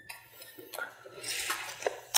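Light metallic clinks and rattling as a steel tape measure is pulled out, with a few sharp clicks.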